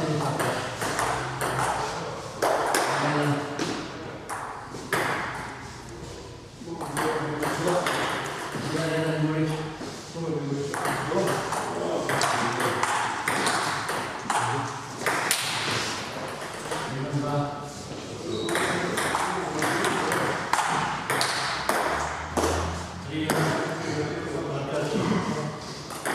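Table tennis ball being struck by rubber-faced bats and bouncing on the table in rallies, a string of sharp light pings and clicks.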